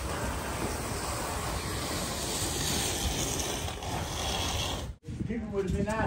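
Steady rushing outdoor background noise with a low rumble. It breaks off abruptly about five seconds in, and a voice is speaking after that.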